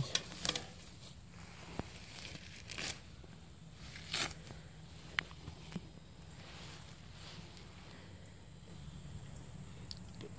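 Quiet rustling with a few brief tearing sounds as plants are handled: a weed pulled up by hand at the start, then rooted tomato cuttings pulled apart.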